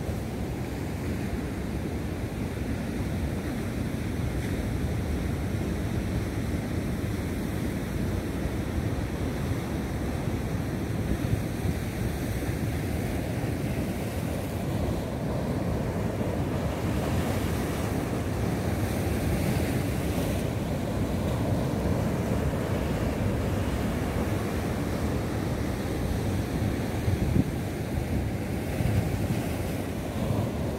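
Rough sea surf breaking and washing over rocks, a steady rush, with wind buffeting the microphone.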